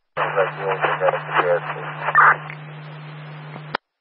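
Police radio transmission heard through a scanner: a couple of seconds of thin, unclear speech, then about a second of open-channel hiss over a steady low tone. It cuts off suddenly with a squelch click near the end.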